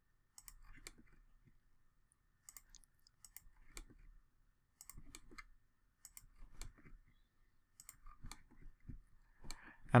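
Computer mouse button clicking, each one picking a line on screen. The clicks are short and quiet, about one a second, often as a quick pair.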